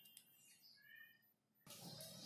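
Near silence: quiet room tone, with one faint, short, high chirp about a second in.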